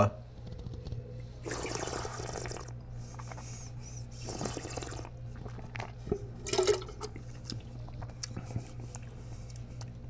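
A taster slurping a mouthful of red wine, drawing air through it in two hissing slurps, then spitting it into a stainless steel spit cup about six and a half seconds in.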